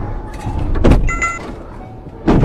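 Road vehicle collision recorded by a dash camera: a loud crash impact a little under a second in over steady road noise, followed briefly by a high ringing tone.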